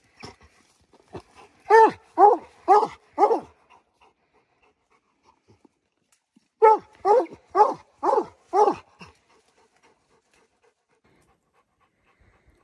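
Redbone coonhound barking treed at the base of a tree, baying up at a raccoon: a run of four short barks, then after a pause a run of five, each bark rising and falling in pitch.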